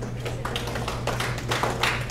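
Audience applause: dense, overlapping hand claps that grow a little louder in the second half, over a steady low hum.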